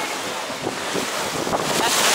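Wind buffeting the microphone over water rushing along the hull of a moving boat, the rush growing louder about a second and a half in.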